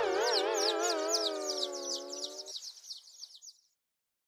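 Cartoon 'dazed' sound effect: a warbling, wobbling tone fading away over about two and a half seconds, with rapid high twittering chirps, several a second, that die out shortly after. It is the sign of a character knocked dizzy after a crash.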